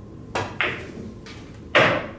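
Pool shot on a billiard table: the cue tip strikes the cue ball, the cue ball clicks off the object ball an instant later, and the loudest knock of a ball comes near the end.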